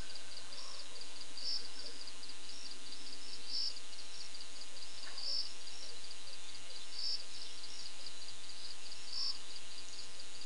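Night insects chirping in a steady high-pitched pulsing, a few ticks a second, with a louder burst about every one and a half to two seconds.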